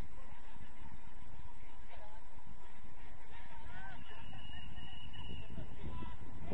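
Players' distant shouts and calls across a football pitch over steady low background noise, with a thin, steady high tone about four seconds in that lasts a second and a half.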